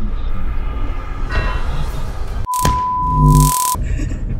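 An edited-in electronic beep, one steady high tone held for just over a second, starts about two and a half seconds in after the sound cuts out for an instant. A louder low buzz joins it near the end. Before it there is a steady car-cabin road rumble.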